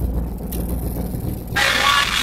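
The 1958 Chevrolet Delray's engine running, heard from inside the cabin. About one and a half seconds in, the car radio comes on suddenly and loud, playing music.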